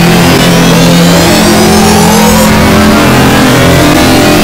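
Very loud, heavily distorted electronic noise with a steady low hum and a slow rising whistle high up.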